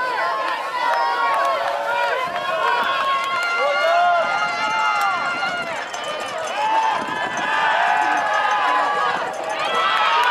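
Spectators at a football game talking and calling out together, many overlapping voices with no single clear speaker.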